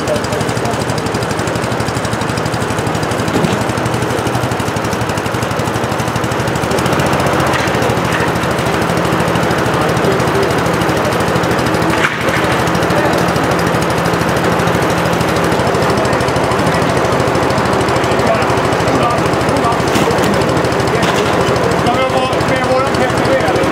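Small engine running steadily at one constant speed throughout, with a single brief knock about halfway through.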